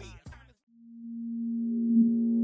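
A hip-hop track with rapping cuts off about half a second in; after a brief gap a steady low synthesized tone fades in and swells, the opening of a logo sting.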